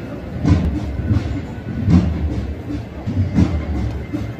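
Low drum beats from a Holy Week procession, a slow, uneven march rhythm of deep thumps with no melody over them.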